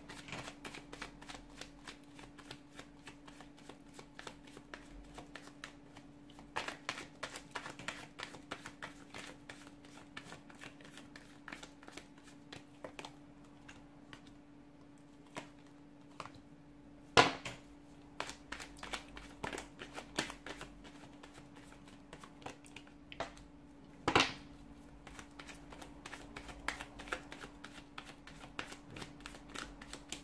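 Tarot cards being shuffled by hand: a dense, continuous run of small card clicks and flicks, with two louder sharp snaps partway through as cards come off the deck. A steady low hum runs underneath.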